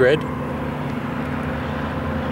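Steady outdoor background noise: an even hiss with a faint low hum, holding at one level after a last spoken word at the very start.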